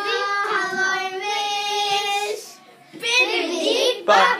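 A child singing, holding long steady notes for a little over two seconds, then stopping briefly before the child's voice comes back near the end.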